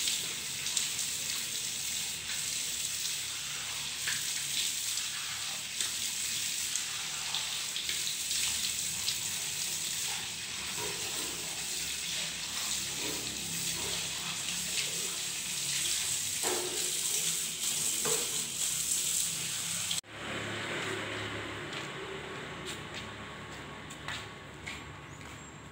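Water running from a wall tap and splashing over hands and a tiled floor during wudu ablution washing, a steady hiss that breaks off abruptly about 20 s in.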